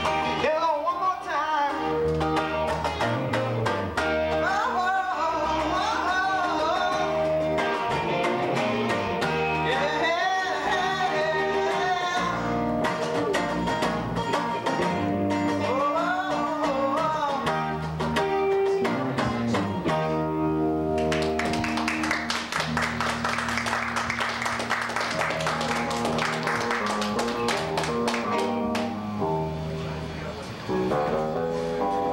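Live acoustic guitar and electric guitars playing a song while a man sings. The singing stops after about 17 seconds, and near the end the playing turns denser and harder-strummed without vocals.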